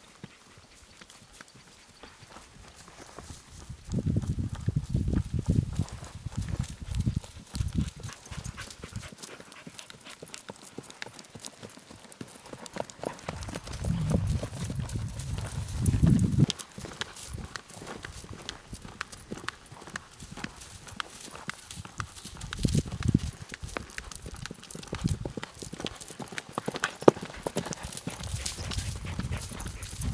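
Hoofbeats of a ridden Morgan mare on grass, a steady run of footfalls as she walks and then trots, with a few stretches of low rumbling.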